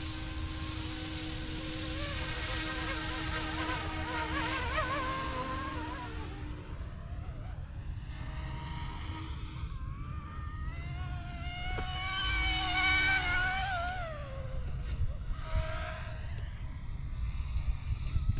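Electric RC scale helicopter flying fast: the whine of its motors and rotors rises and falls in pitch as it sweeps back and forth, loudest about two-thirds of the way through.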